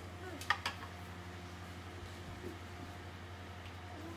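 Two short sharp clicks about half a second in, as a metal baking tray of cookie dough is handled at the oven, over a steady low electrical hum.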